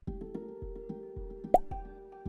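Game-show thinking music begins: held synth tones over a steady low pulse about twice a second. About one and a half seconds in, a single short, sharp sound effect rises above the music.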